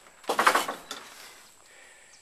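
Hinged fiberglass window cover scraping on its frame as it is swung on its pivot: one short swish about half a second long near the start, then quiet handling.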